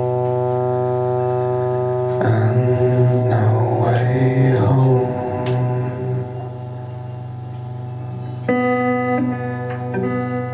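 Live electric guitar playing slow, ringing chords over a steady low drone. About two seconds in, a louder passage with bending pitches swells and then fades. A new chord is struck about eight and a half seconds in and rings on.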